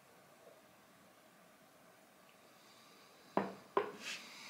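Quiet room while a man sips and tastes whisky from a glass, then two short, sharp clicks about half a second apart near the end.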